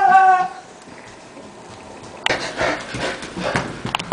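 A person's long, steady held scream cuts off about half a second in. After a brief lull, scuffling and knocking noises of movement start suddenly just past two seconds and run on.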